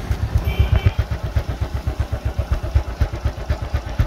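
Honda Wave 110's four-stroke single-cylinder engine idling, heard close at the muffler outlet as an even, quiet exhaust putter.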